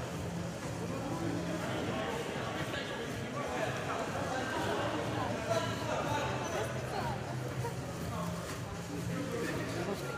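Men's voices calling out across an indoor futsal hall during a stoppage in play, over steady background hall noise, with no close-up speech.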